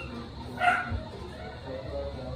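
A dog barks once, a short bark about two-thirds of a second in, the loudest sound here.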